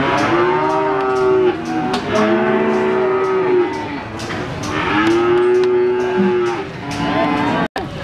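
Cattle lowing: several long moos one after another, each rising and then falling in pitch.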